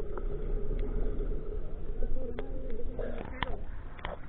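Muffled underwater sound from a camera just below the sea surface: a steady low hum with a few scattered sharp clicks and bubbles, ending in a short burst of noise as the camera breaks the surface.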